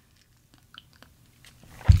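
Faint mouth sounds of a man sipping and tasting a cocktail: a few small lip smacks and clicks, with his voice cutting in at the very end.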